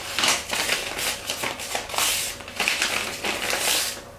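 Newspaper-print wrapping paper rustling and crinkling as a sheet is picked up, handled and folded by hand, in a series of quick rustles and crackles.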